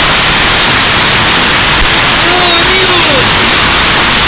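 Hailstorm: heavy hail and rain driven by strong wind, a loud, unbroken rush of noise.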